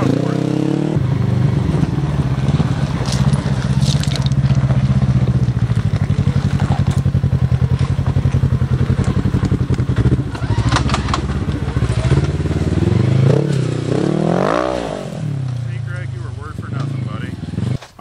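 Polaris RZR RS1's parallel-twin engine running steadily at low revs while crawling down a rock ledge, with a few knocks of tyres and chassis on rock. Near the end the revs rise and fall once.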